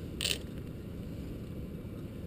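Baitcasting fishing reel being cranked to retrieve line, a faint mechanical gear sound over a steady low rumble, with one brief hiss about a quarter second in.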